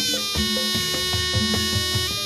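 Live Javanese barongan accompaniment: a shrill reed pipe plays a held, wavering melody over low drum strokes, about three a second, and sustained gong tones.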